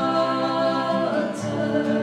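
Live acoustic song: several voices singing together in long held notes, moving to new notes about a second in.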